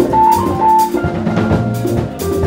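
Live jazz-fusion band playing, with the drum kit out front: a run of drum and cymbal hits over sustained keyboard chords, and a few short high notes in the first second.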